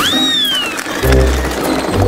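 Background music, with a high whistle-like tone falling in pitch over the first second.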